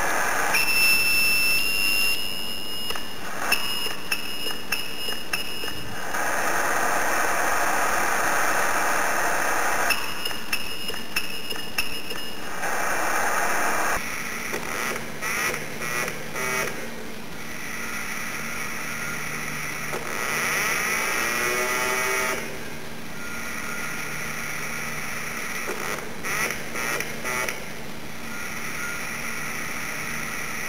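Amateur radio receiver audio: a steady hiss with a high tone that comes and goes in stretches, chopped on and off in places, and a warbling sweep about twenty seconds in.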